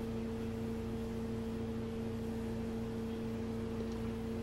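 A steady hum holding two unchanging pitches, one about an octave above the other.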